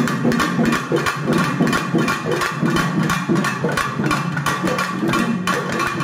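Percussion-led music: fast, dense drum strokes over a steady high tone.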